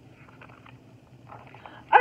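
Soft rustle of a picture-book page being turned, then a woman's animated voice cuts in at the very end.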